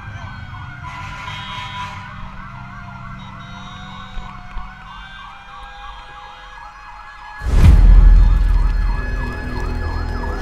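Emergency vehicle sirens wailing, several at once, their pitch wavering up and down. About seven and a half seconds in a sudden loud low rumble starts, then eases but stays on under the sirens.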